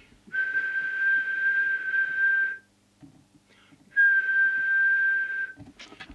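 A person whistling a steady high note into a CB radio microphone, held about two seconds, then again after a short pause: the whistle test used to set the transmitter's FM deviation.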